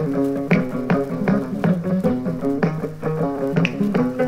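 Ngoni, the West African plucked lute, playing an instrumental passage: a repeating figure of plucked notes over a low line that steps between a few pitches, with no voice. It comes from an early-1960s radio archive recording.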